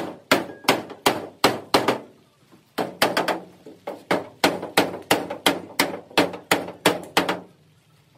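Hand-hammer blows on the sheet-steel panels of a crushed truck cab as its dents are beaten out, about three strikes a second, each with a brief ring. The blows pause briefly about two seconds in, then run on steadily until just before the end.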